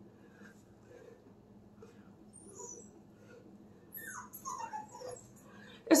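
A dog whining: a few short, falling whines about four to five seconds in, against a quiet room.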